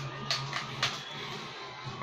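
Quiet music from a cartoon on a television, with two light clicks, one about a third of a second in and one just under a second in.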